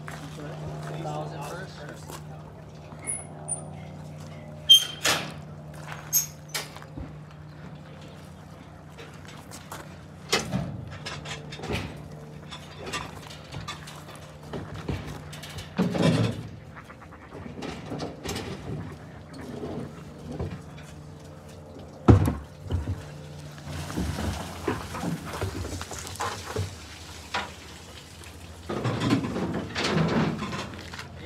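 Steady low hum from a fish-stocking truck, cutting off about three-quarters of the way through, with scattered sharp clunks and knocks of equipment being handled on the truck.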